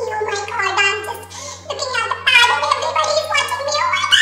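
A woman's high-pitched voice in fast, unintelligible vocal chatter, over a steady low hum.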